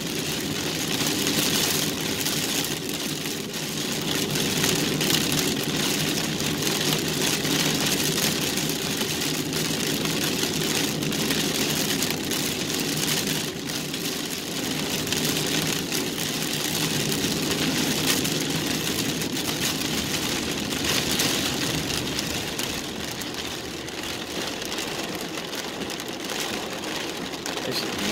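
Steady noise inside a car driving through heavy rain: rain hitting the roof and windshield and tyres running on the wet road, with the engine running underneath.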